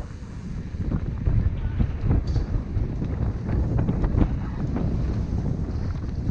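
Wind buffeting the microphone of a helmet-mounted camera on a mountain bike riding fast down a dirt trail, over a steady rumble of tyres on the ground. Frequent clicks and knocks come from the bike rattling over bumps.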